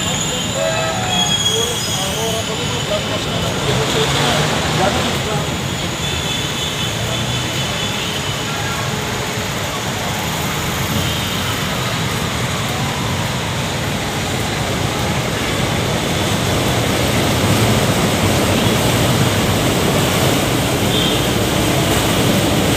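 Steady city traffic din with an elevated LRT train running along the line, and people talking nearby.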